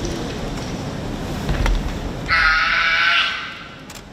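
A young karateka's kiai during a Shito-ryu kata: one high shout held for about a second, starting a little past halfway, with a sharp click shortly before it.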